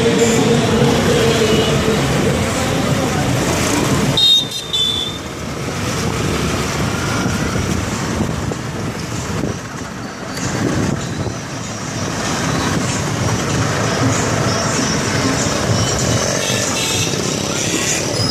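Busy street traffic, mostly motorcycles and cars running, heard from among the traffic, with a short high horn toot about four seconds in.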